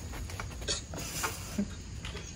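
Faint handling noises as a rider climbs onto a mountain bike: a few soft clicks and creaks over a low, steady background rumble.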